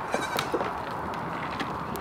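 Nigerian Dwarf goats bleating faintly at feeding time over a steady rustling background, with a couple of sharp clicks.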